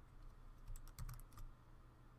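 A quick run of about half a dozen clicks from computer keys, a little after the start, over a faint steady low electrical hum.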